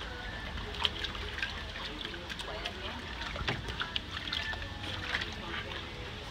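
Water splashing and trickling as a wire fox terrier paws and noses at a ball in a shallow plastic kiddie pool, in a string of short, sharp splashes, with voices in the background.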